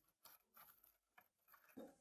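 Near silence: only faint room tone, with no clear sound event.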